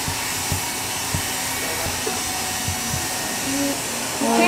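Hand-held hair dryer blowing steadily at a constant pitch while drying short wet hair.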